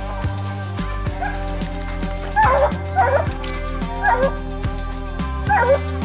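Bluetick coonhound barking up a tree in short loud bursts, about one a second, starting a couple of seconds in: a treed bark, the sign that the hound has the raccoon up the tree. Background music plays under the barking throughout.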